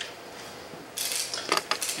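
A brief clattering of small hard objects with several sharp clicks, starting about a second in.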